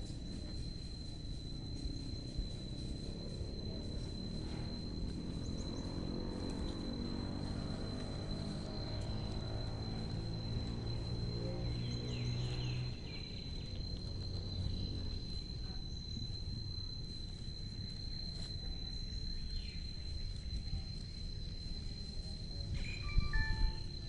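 A steady high-pitched insect trill that runs on unbroken, with faint distant music or other low pitched sounds in the middle.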